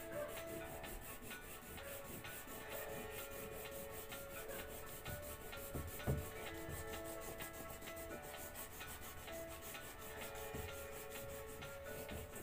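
Wax crayon rubbed rapidly back and forth on paper, shading in a large area: a steady, quiet scratching made of quick, evenly repeated strokes.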